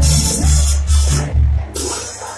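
Live Mexican banda brass band playing loud: a tuba carrying a bouncing bass line under trumpets and trombones, with drums and repeated cymbal crashes.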